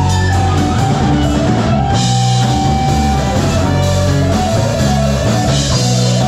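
Live rock band playing: electric guitar, bass guitar, drum kit and keyboard. Cymbals come in more strongly about two seconds in, over a steady bass line.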